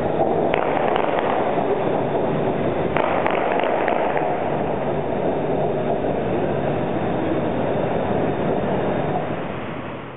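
BTS Skytrain train running along the elevated track at the station, a steady, loud rail noise with a few faint squeals or clicks, fading away in the last second.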